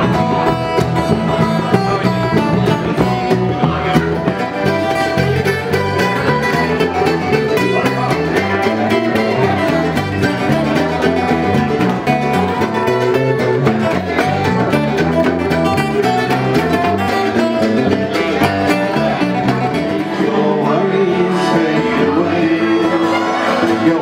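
Live acoustic folk session music: a strummed acoustic guitar, a fiddle and other plucked strings, with a bodhrán frame drum. A man's singing comes in near the end.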